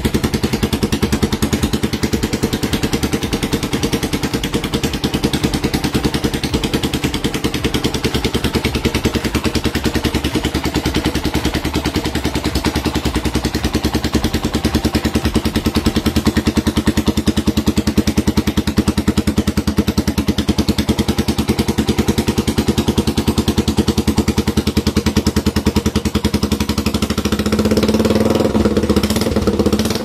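Suzuki Grass Tracker's single-cylinder four-stroke engine idling steadily through a homemade shotgun-style exhaust built from the modified stock header, a loud, even run of exhaust pulses. It gets louder for the last few seconds.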